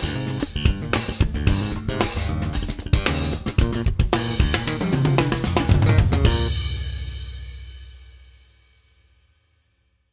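Pearl drum kit played in a fast, busy solo of snare, toms, bass drum and cymbals, ending about six seconds in on a final hit whose ringing dies away over the next few seconds.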